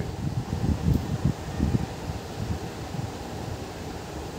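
Low, uneven rumbling background noise on the narrator's microphone, steady in level with soft irregular bumps and a faint hiss above.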